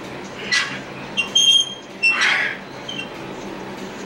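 Short high-pitched squeaks, the longest about a second and a half in, with smaller ones near two and three seconds, between two brief hissing bursts.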